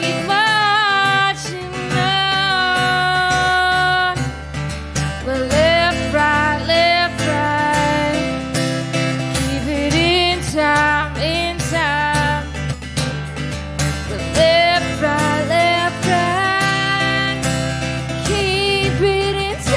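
Music: a woman singing with long held, wavering notes over a strummed acoustic guitar.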